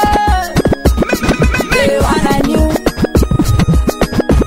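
DJ scratching a record on a turntable over a music mix's beat, in quick chopped strokes.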